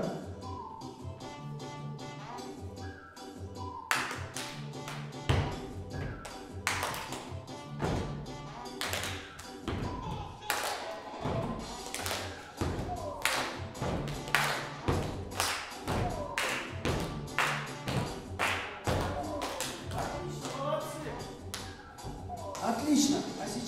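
Upbeat backing music with a steady beat. From about four seconds in, people clap along in rhythm, about two claps a second.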